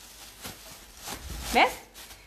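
Thin plastic bag rustling faintly as it is twisted and knotted shut around a ball of pizza dough.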